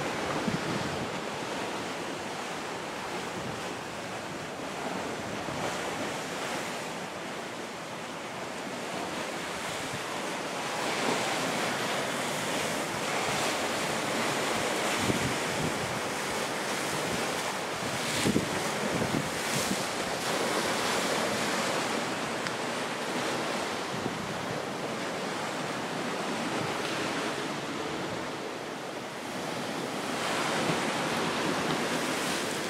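Sea waves washing and breaking against a rocky shore, coming in surges that are loudest a little past the middle, with wind blowing across the microphone.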